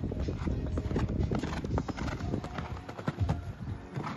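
Hoofbeats of a horse cantering on a sand arena surface: a run of short, irregular thuds.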